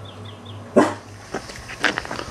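A standard poodle puppy barks once, a single short sharp bark about a second in, after a few faint high squeaks. A second short sharp sound comes near the end.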